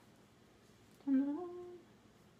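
A woman's voice saying one drawn-out, sing-song "okay" about a second in, stepping up in pitch and held; otherwise only faint room tone.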